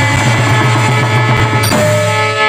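Live stage-drama band music: a harmonium holds steady chords over tabla and drum beats, with a sharp cymbal-like hit near the end.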